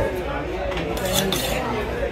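A fish-cutting knife honed on a round sharpening stone: a few quick metallic scraping strokes in the second half.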